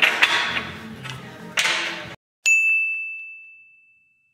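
A single bright chime-like ding, a sound effect on the edit: one sharp strike whose clear high tone rings and fades away over about a second and a half. Before it comes about two seconds of noisy sound with a few knocks, cut off abruptly.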